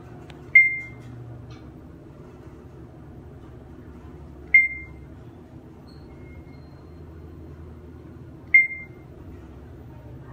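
Schindler 3300 traction elevator's floor-passing beep: three short high beeps about four seconds apart as the car travels down past each floor, over the low steady hum of the moving car.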